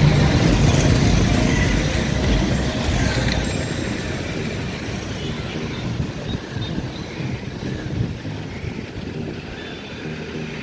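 A vehicle's low rumble, loudest at the start and cutting down sharply about three seconds in, then fading steadily.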